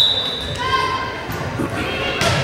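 A referee's whistle gives a short, steady, high blast at the start, the signal for the serve, followed by players and spectators calling out in a large echoing gym.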